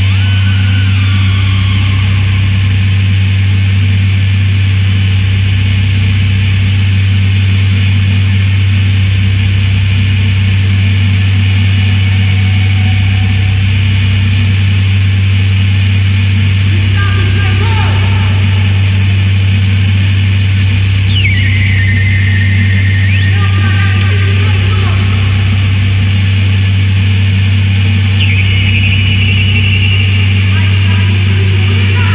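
Harsh electronic noise from effects pedals and electronics: a loud steady low drone with a throb pulsing on and off about every second, under high squealing tones that sweep down and up in pitch.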